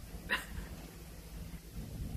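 A single short, high yelp about a third of a second in, over a low steady background rumble.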